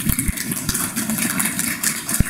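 Small audience applauding: a scattering of hand claps from a few people.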